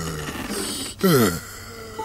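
A cartoon voice gives one low, falling groan about a second in, the sound of the sleeping tree character.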